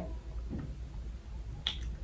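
Quiet handling of a bundle of wavy human hair extensions, fingers running through the hair, with one short sharp click a little before the end.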